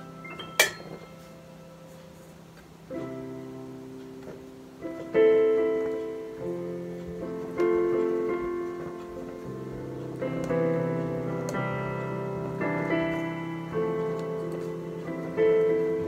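A Casio Privia PX-S1000 digital piano is played with both hands in a piano sound: a held chord fades, then chords are struck every second or two from about three seconds in, each ringing on and decaying. A single sharp click comes just after the start.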